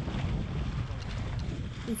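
Wind buffeting the microphone on the deck of a sailboat under way, a steady low rush with no other distinct sound.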